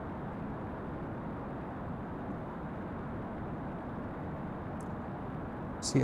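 Steady, even background noise with no distinct tone, rhythm or clicks.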